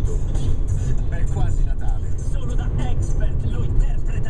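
Steady low rumble of a car driving, heard inside the cabin, with the car radio faintly playing an advertisement of voice and music over it.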